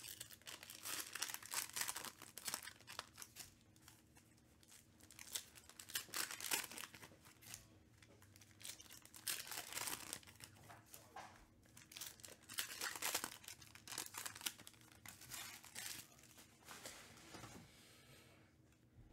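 Foil trading-card pack being torn open and its wrapper crinkled by hand, in repeated bouts of crackling.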